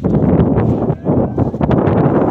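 Wind buffeting a phone's microphone: a loud, rough rush of noise that dips briefly about halfway through.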